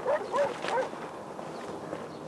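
A dog giving a few quick, short yelping barks in the first second.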